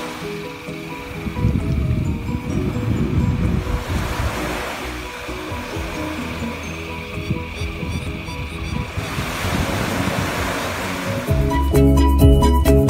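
Small waves washing up onto a sandy beach, swelling twice, under soft background music that grows louder near the end.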